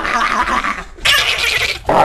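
A teenage boy screaming loudly into the camera in two rough yells. The first breaks off just before a second in, and the second follows right after.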